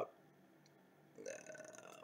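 A man's soft, stifled burp, quiet and under a second long, starting just past a second in.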